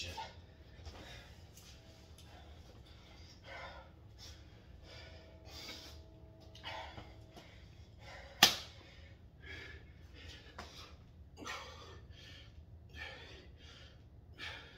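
A man breathing hard from exertion in quick, noisy gasps, with one sharp smack about eight seconds in.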